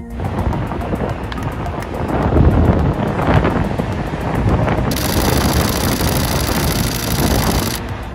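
Wind buffeting a camera's microphone in the open top deck of a stadium: a loud, uneven rumbling roar, strongest in the low end and swelling around the middle, with a hiss joining about five seconds in.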